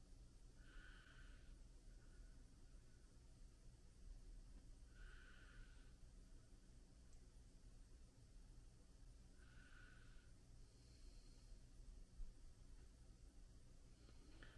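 Near silence: room tone, with three faint, short high-pitched sounds spaced about four to five seconds apart.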